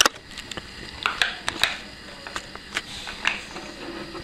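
Scattered small clicks and taps of a die-cast Matchbox toy pickup being handled and set down on a wooden tabletop, the sharpest click right at the start.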